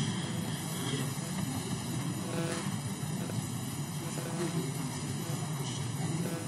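Steady low hum of a large debating chamber with an indistinct murmur of voices in the background, no one speaking clearly.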